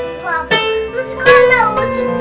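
A young child's voice sings out a few sliding notes over electronic keyboard notes. Near the end, steady held keyboard-like music takes over.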